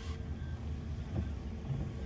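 Steady low rumble of a motor vehicle underway, heard from inside the cabin.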